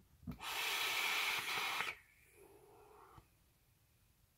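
A drag on a box-mod vape: a steady hissing inhale through the atomizer lasting about a second and a half, then a softer, shorter exhale of vapour about a second later.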